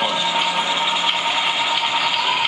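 TV show bumper sound effect: a steady rushing noise with a thin, held tone under it. It runs unbroken and ends just before speech resumes.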